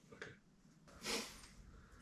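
A short, soft breath from a man, about a second in, in an otherwise quiet small room.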